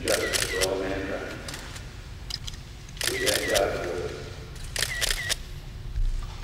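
Press cameras' shutters clicking in short rapid bursts, about four times, over a low voice.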